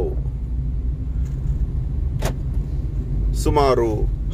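Steady low rumble of a car heard from inside the cabin, with one sharp click a little past halfway.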